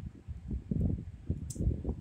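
Muffled low thumps and rustling of clothing close to the microphone, with one short sharp click about one and a half seconds in.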